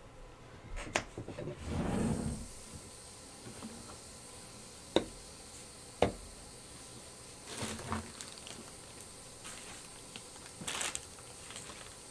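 Two sharp taps about a second apart, with quieter rustling and handling noise, as small bottles of ink spray are picked up and set down on the work surface.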